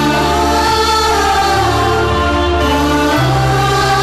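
Background score music with held chords and a sung, wordless-sounding vocal melody that bends in pitch over them.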